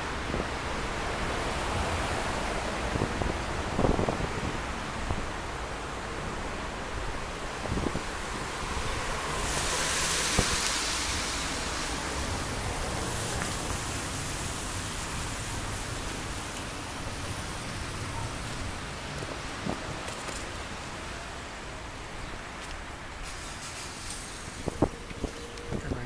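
Wind rumbling on the microphone over steady outdoor street noise. A hiss swells about ten seconds in and fades out over several seconds.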